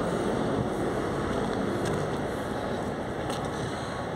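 Steady street noise: a low rumble of road traffic that eases slightly towards the end.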